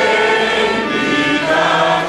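A small group of people singing a hymn together from their booklets, voices holding long notes that change pitch every half second or so.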